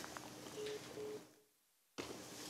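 Faint telephone-line hiss with three short, low electronic beeps about a third of a second apart, then the audio cuts to dead silence.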